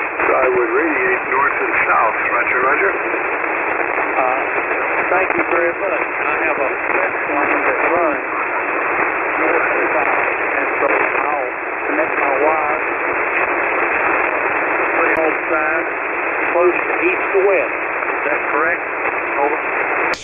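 A man's voice received over single-sideband on a 40-metre ham radio receiver, weak and buried in steady band noise and static, narrow and tinny and hard to make out.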